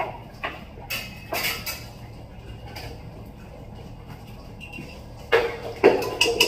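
Steel utensils knocking a few times, then, near the end, a metal spoon clattering and clinking against the inside of a steel pressure cooker as a boiled potato is scooped out.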